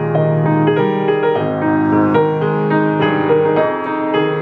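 Hamburg 5-foot baby grand piano with a duplex scale being played: a continuous passage of chords under a melody, with fresh notes struck several times a second and earlier notes left ringing under them.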